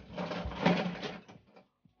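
Die-cast toy cars clattering against each other and the plastic as a hand rummages through a clear plastic canister full of them, a busy rattle lasting about a second.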